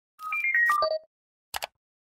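Short electronic jingle for a channel logo: a quick run of bell-like notes stepping down in pitch, followed about a second and a half in by two brief clicks.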